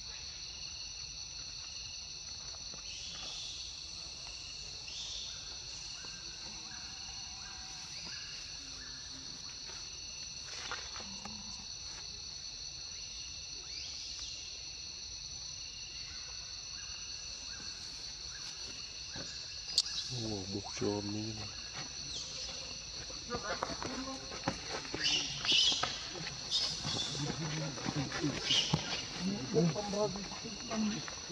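Steady high-pitched drone of insects, several constant tones held throughout. About two-thirds in, voices come in over it, with short loud calls near the end.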